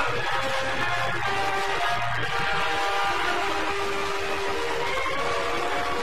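Orchestral film score playing long, sustained chords over steady background noise.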